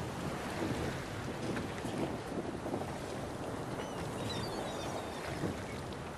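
Steady wind and water noise on the open deck of a motor yacht at sea, with a few faint high chirps around the middle.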